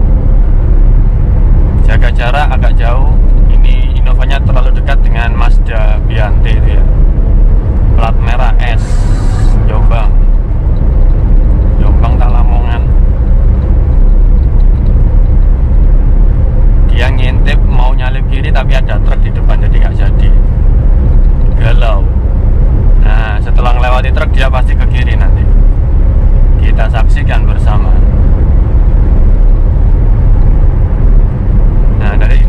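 Steady low drone of road, tyre and engine noise inside the cabin of a 2014 Suzuki Karimun Wagon R with a 1.0-litre three-cylinder engine, cruising at highway speed on a toll road. Bursts of talk are heard over it.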